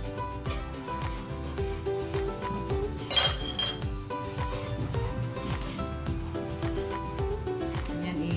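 Background music with a steady beat. About three seconds in, a metal spoon clinks against a stainless steel mixing bowl with a brief ring. Soft scraping of a wooden spatula in thick mashed yam may lie under the music.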